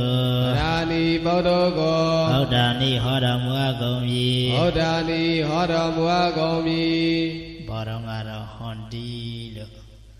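A Buddhist monk's male voice chanting Pali scripture in long, held, melodic notes into a microphone; the chant grows quieter about three-quarters of the way through.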